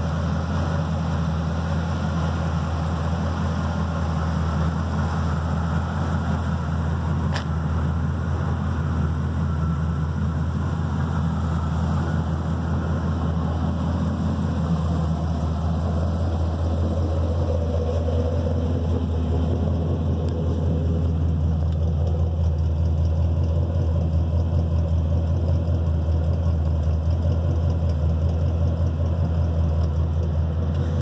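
Square-body Chevrolet dually pickup's engine idling steadily, heard close to the truck.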